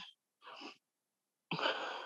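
A woman breathing audibly: a short, faint breath about half a second in, then a louder, longer breath near the end.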